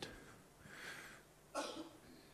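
A faint breath, then a short, soft cough about a second and a half in.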